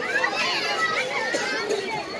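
Several children's voices chattering and calling out over one another as they play, with no pause.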